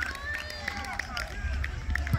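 Scattered voices of players and spectators calling out across an open football field, at a distance and without clear words. Under them runs a low rumble that grows louder near the end.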